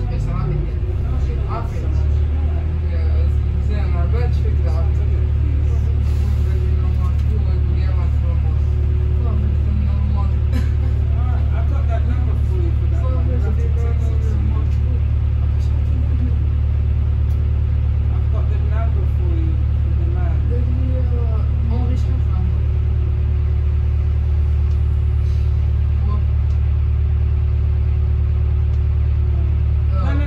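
Volvo B5LH hybrid bus's diesel engine running, heard inside the passenger saloon as a steady low drone with a faint constant higher tone; it settles into an even, slightly louder drone about two seconds in. Faint passenger voices are heard underneath.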